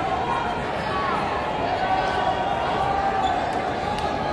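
Steady din of many overlapping voices from a crowd of spectators in a large hall, with some dull thumps underneath.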